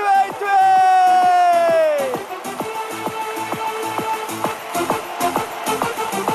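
A man's long, drawn-out shout celebrating a goal, sliding down in pitch and dying away about two seconds in. Then electronic dance music with a steady, fast beat.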